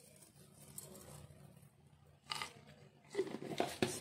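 Crinkling and rustling of a small packet as a crispy fried topping is scattered over a plate of fried rice vermicelli, with a short rustle about two seconds in and a run of sharp crackles and clicks near the end.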